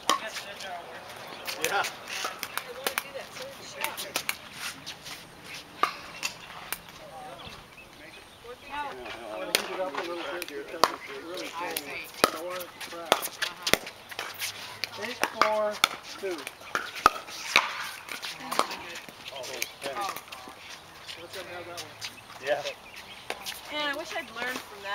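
Pickleball rally: paddles striking a plastic pickleball, sharp pops at irregular intervals, the loudest a little past halfway. Voices talk in the background.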